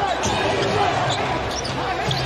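Basketball being dribbled on a hardwood court, with steady arena crowd noise.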